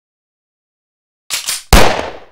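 Gunshots: two quick sharp cracks just past the middle, then a much louder shot that booms and dies away over about half a second.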